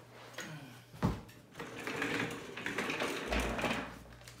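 A knock about a second in, then office chair casters rolling with a dense clatter over a tile floor and onto a clear vinyl (PVC) chair mat.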